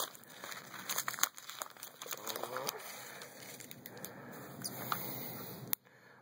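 Plastic card packaging crinkling and rustling as it is worked open by hand, with scattered small clicks and snaps; it stops abruptly near the end.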